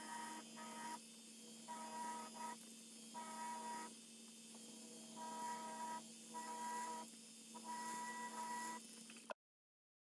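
Engraving handpiece of a Best Built BB70M engraver buzzing in uneven bursts, starting and stopping repeatedly as it marks the back of a sterling silver pendant, over a steady low hum. The sound cuts off abruptly near the end.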